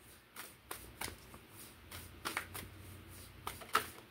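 A deck of tarot cards being shuffled by hand, overhand, making a run of short irregular flicks and slaps, the loudest near the end.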